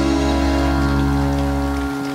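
A band's final chord ringing out on acoustic guitars with a low bass note, held and slowly fading, the bass stopping near the end.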